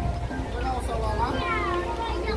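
High-pitched children's voices, with a couple of squealing rising-and-falling calls about a second in, over steady background music.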